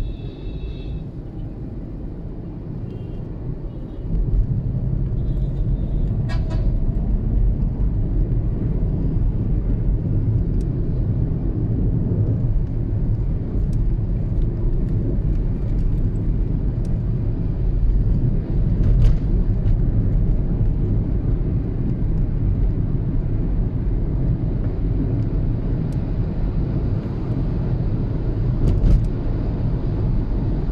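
Road and engine noise heard from inside a moving car in city traffic: a steady low rumble that gets louder about four seconds in, with a few brief clicks.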